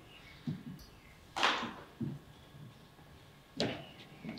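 A quiet pause in a room, broken by two short rushing noises about two seconds apart, each fading within about half a second, and a few faint low bumps.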